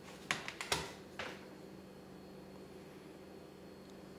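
A handful of quick clicks and knocks in the first second and a half from handling a 1986 General Electric clock/radio/TV while its battery backup is tested, then a faint steady hum.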